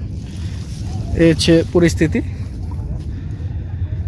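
Steady low outdoor rumble by the river, with a few short spoken words about a second in.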